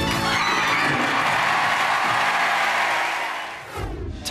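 Studio audience cheering and applauding as one dense wash of noise, which fades away near the end.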